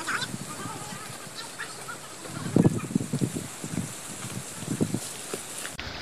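Footsteps and the rustle of leaves and brush as a hiker walks through forest undergrowth on a trail: irregular soft thuds, most of them in the second half.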